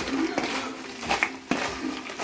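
Wooden spatula stirring and tossing fried baby corn in a thick chili sauce in a non-stick kadhai, knocking against the pan a few times.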